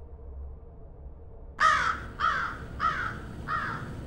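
A crow cawing: about five caws in quick succession, beginning about one and a half seconds in.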